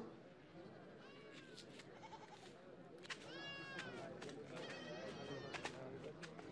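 Faint background ambience with a few short, high animal calls that fall in pitch, around one, three and five seconds in, over scattered light clicks.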